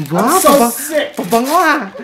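A person's excited vocal exclamation of delight, in two drawn-out swoops of rising and falling pitch.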